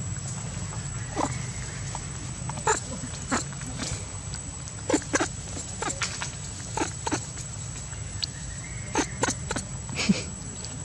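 Baby macaque eating rice close to the microphone: about a dozen short, irregular wet smacks and clicks of chewing, clustered in a few quick runs.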